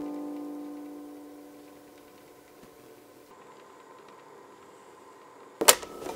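Acoustic guitar's last strummed chord ringing out and slowly fading over about two seconds, leaving a faint hiss. Near the end comes one sharp, loud mechanical click: a key being pressed on a vintage quarter-inch reel-to-reel tape recorder.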